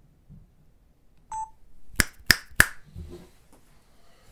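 A short electronic beep, then three sharp clicks in quick succession about a third of a second apart, with light handling and rustling noise.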